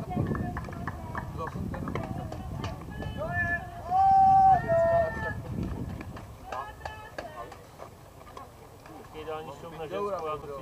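People shouting and calling out on a softball field, with a loud, drawn-out shout about four seconds in.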